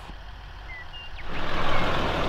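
Low steady rumble of a vehicle. About a second and a half in, a louder steady rushing noise joins it.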